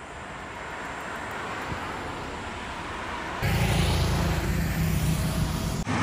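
Road traffic: a car going by on the road, its tyre and engine noise growing louder. About three seconds in, a louder rush with a low rumble starts abruptly, then stops just before the end.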